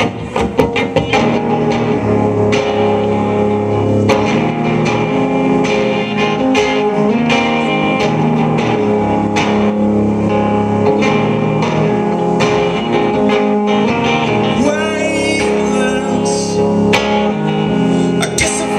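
Electric guitar played solo through an amplifier, a Telecaster-style guitar picking and strumming the song's instrumental intro with notes ringing on.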